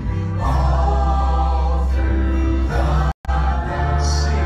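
Live folk band playing a song: singing voices over acoustic guitar, grand piano and electric bass, with a strong bass line. The sound cuts out completely for a split second about three seconds in.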